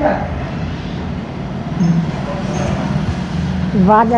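Steady low rumble of a motor vehicle or road traffic, with faint voices over it. Near the end a voice starts a drawn-out, wavering 'vaa'.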